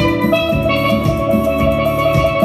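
Steelpan melody played with mallets on a pair of chrome steel pans, the struck notes ringing on, over a backing track with a bass line and drums.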